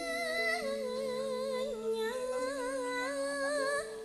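Female Javanese singer (sinden) singing a slow, held melodic line with wide vibrato, sliding between notes, over sustained instrumental notes in campursari music.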